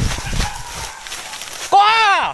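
Rustling and thudding of someone pushing through undergrowth on foot, then near the end a loud shouted call that rises and then falls in pitch.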